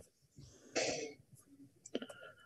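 A person clearing their throat once, a short rasp about three-quarters of a second in, over a quiet room.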